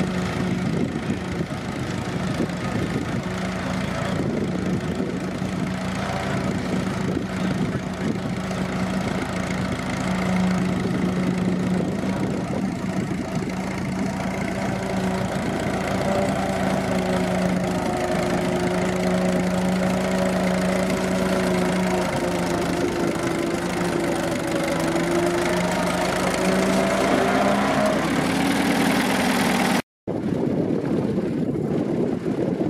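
Case Model C tractor's four-cylinder engine running steadily under load while pulling a plough through sticky soil, its pitch wavering slightly in the second half.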